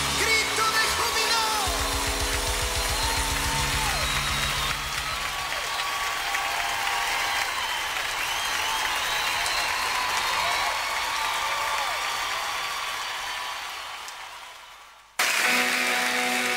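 A gospel song with a sung melody over a band fades out. Just before the end a new song with guitar starts abruptly.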